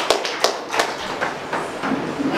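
Scattered handclaps from a few people, distinct separate claps that thin out and stop about a second in.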